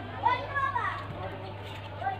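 High-pitched children's voices in the background, loudest in the first second, over a steady low hum.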